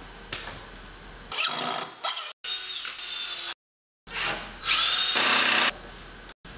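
Power drill running in several short bursts on a wooden stud wall frame, its whine rising each time it spins up; the longest and loudest burst comes about two thirds of the way in. The bursts break off suddenly.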